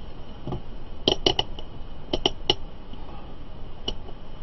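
A string of sharp clicks, about eight, mostly between one and two and a half seconds in and one more near the end. They come from a handheld digital multimeter being handled: its rotary selector dial turned and its test leads moved to switch from reading volts to reading amps.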